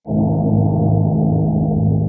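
A loud, deep cinematic sting: a low droning tone that starts suddenly and holds steady, used as a title-card transition sound effect.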